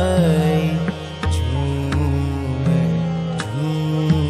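Indian devotional kirtan music in raag Malhaar, set to chautaal: a melodic line with gliding notes over a low sustained drone, with drum strokes marking the beat.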